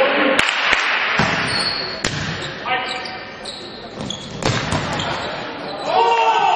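Volleyball rally in a large echoing sports hall: the ball is struck sharply three times, about a second and a half to two and a half seconds apart, over a steady background of voices.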